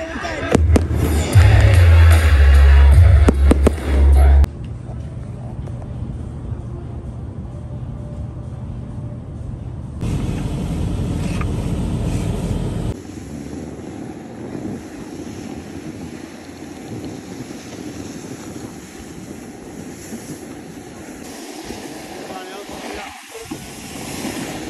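Fireworks going off: a quick string of sharp bangs and crackles over a deep rumble for the first four seconds or so. After that, quieter outdoor sound continues across several cuts.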